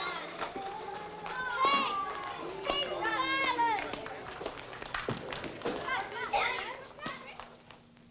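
Children's voices shouting and calling out at play, high-pitched and without clear words, fading away near the end.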